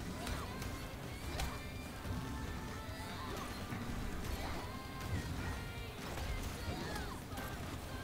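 Soundtrack of an animated fight scene: background music under sharp hits and crashes, with several impacts in the first two seconds.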